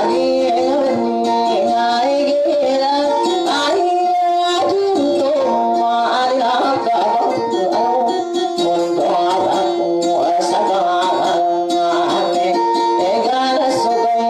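Dayunday music: a plucked string instrument playing a wandering melody over a steady held note.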